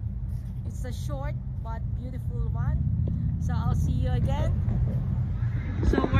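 People's voices talking in short phrases over a steady low rumble.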